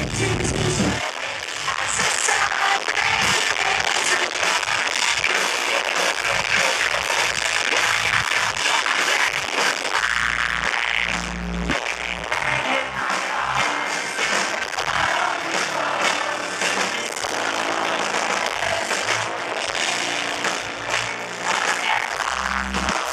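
Post-hardcore rock band playing live at full volume, heard from inside the audience. The deep bass drops away about a second in and comes back only in short stretches.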